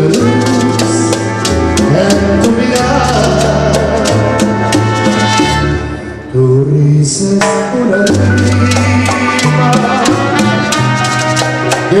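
Live Latin dance band (sonora) playing a bolero: maracas shaking a steady rhythm over a bass line and sustained melodic lines. About six seconds in the band briefly thins out, then comes back in fully.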